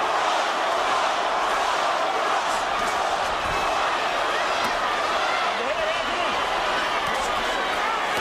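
Boxing arena crowd, a steady dense din of many voices chanting and cheering for Roy.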